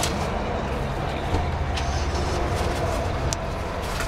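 Steady low rumble of an engine running at idle, with a few light clicks and rustles of binder pages being handled.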